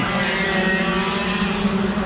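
Briggs LO206 kart engines running on the track, a steady drone held at one pitch.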